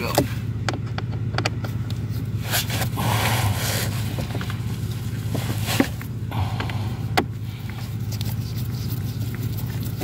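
Scattered clicks and short scrapes of a stubby screwdriver and gloved hands working loose the last screw of a plastic HVAC blend door actuator, with sharper clicks about six and seven seconds in, over a steady low hum.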